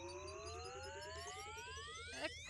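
Sci-fi railgun charging sound effect: a whine rising steadily in pitch over a rapid warning beep.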